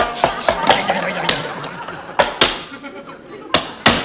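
Crockery knocked against a tabletop: about nine sharp, irregular knocks, two of them close together near the middle and two more just before the end.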